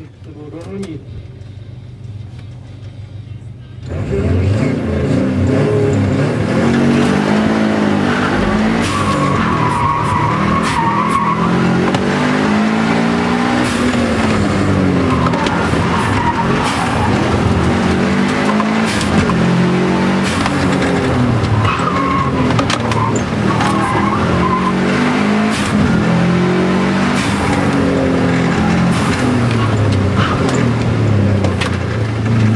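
Subaru Impreza WRX STI's turbocharged flat-four engine heard from inside the cabin: running low and steady for about four seconds, then accelerating hard, its revs climbing and dropping again and again through gear changes and corners. Short tyre squeals come twice, about ten seconds in and again past twenty seconds.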